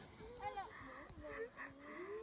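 Faint human voice sounds: quiet low murmurs and a drawn-out, moan-like hum.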